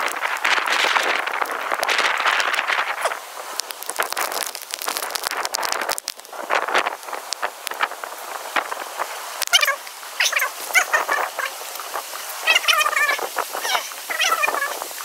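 Thunder during a night thunderstorm: a long, loud crash in the first few seconds, then quieter crackling. From about ten seconds in, short warbling animal calls repeat.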